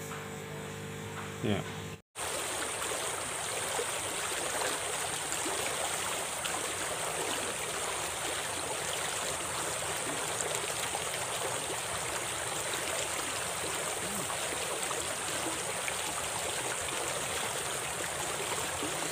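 Steady rush of a small, fast-flowing stream, starting suddenly about two seconds in. Before it, a low electrical hum.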